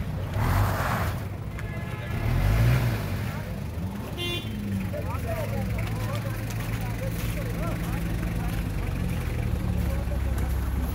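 Car engines running with a low rumble that swells about half a second in and again between two and three seconds in. A short high tone sounds about four seconds in, and voices are heard in the background.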